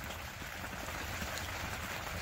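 Rain falling steadily on the greenhouse, with a low steady hum underneath.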